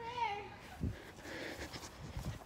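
A faint, drawn-out child's voice trailing off in the first half-second, then a soft thump about a second in and light handling noise from the moving phone.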